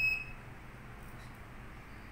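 Anti-UV lens / anti-radiation detector's steady high-pitched beep, cutting off just after the start, followed by low electrical hum and a few faint clicks.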